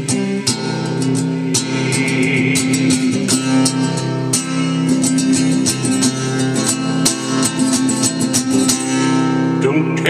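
Acoustic guitar strummed in a steady rhythm, chords ringing on between the strokes.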